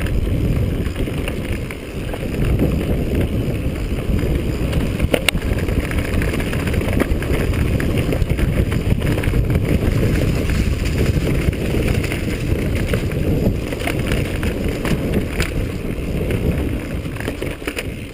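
Wind buffeting the microphone over the rattle of a mountain bike riding fast down a dirt singletrack, with a few sharp knocks from the bike over bumps.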